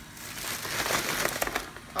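Plastic shopping bag crinkling and rustling as it is handled, with a few sharp clicks about a second and a half in.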